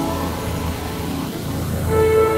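A low rumbling swell with a rising hiss in a cartoon soundtrack, breaking into sustained orchestral chords near the end.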